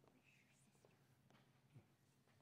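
Near silence: room tone with a faint steady hum and a few soft knocks, the strongest near the end.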